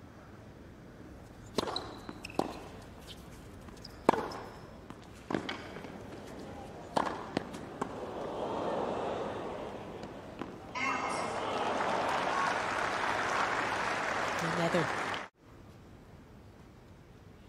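Tennis rally on a hard court: racquet strikes on the ball about every second or so over a low crowd murmur. The crowd then breaks into loud applause and cheering for about four seconds, which cuts off abruptly near the end.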